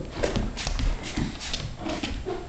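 Irregular clicks and knocks of a large dog's claws and feet on a hardwood floor as it moves about.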